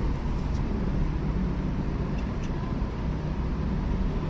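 Steady low-pitched background noise with no distinct events.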